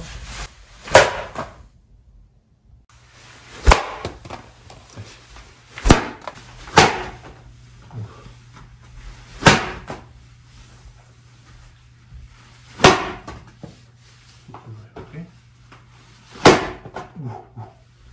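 Folded-paper ddakji tiles slapped down hard onto a floor mat: about six sharp slaps a few seconds apart as one tile is thrown at another to flip it, the last throw flipping it.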